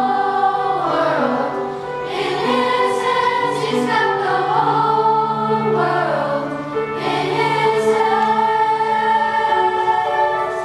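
Middle school choir singing: many young voices in several parts, holding long sustained notes.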